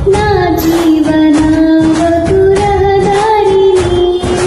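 A young woman singing a Telugu Christian worship song over a karaoke backing track with a steady beat, holding long notes that step slowly in pitch.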